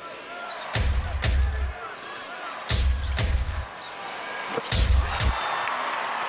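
Basketball dribbled on an arena's hardwood court: sharp bounces, roughly in pairs about every two seconds, each with a deep boom, over steady crowd noise.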